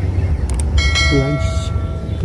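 Subscribe-button animation sound effect: two quick clicks, then a bright bell chime that rings for about a second and fades, over a steady low rumble.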